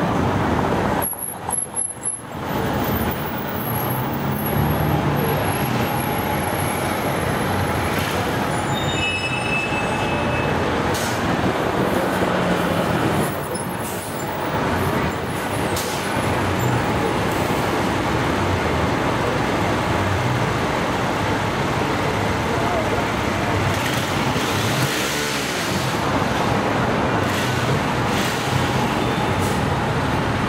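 City street traffic: cars and buses running and passing steadily, with indistinct voices of passers-by. The sound dips briefly about a second in.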